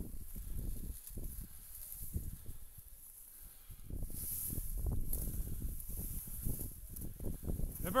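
A hunting dog pushing through tall dry grass: stems brushing and scraping against a low, dog-carried camera, with irregular footfalls and knocks. The sound rises and falls unevenly, with a brief louder hiss about halfway through.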